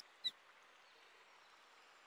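Near silence: a faint, steady rush of falling water, with a brief soft click just after the start.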